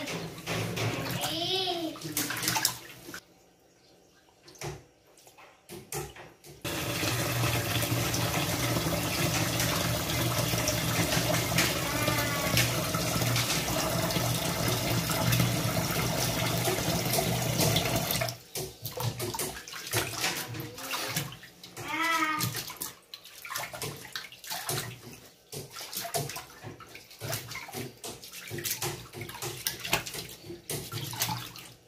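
Tap water pouring into an aluminium pot of rice in a stainless steel sink, starting about seven seconds in and cutting off about eighteen seconds in, to rinse the rice. Before and after it, hands swish and splash the rice around in the water to wash it.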